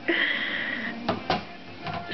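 A high, steady squeal held for most of a second, then two sharp clacks a fifth of a second apart as the small door of a toy play grill's oven swings shut.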